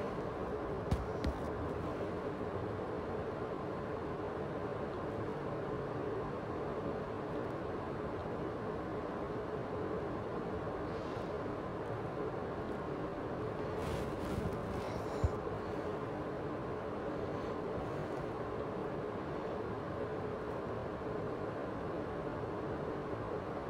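Steady background noise, an even hiss and hum, broken by two faint clicks about a second in and one more about two-thirds of the way through.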